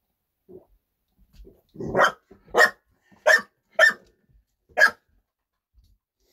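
Pit bull barking five times in quick succession, between about two and five seconds in; the first bark is longer and lower than the rest.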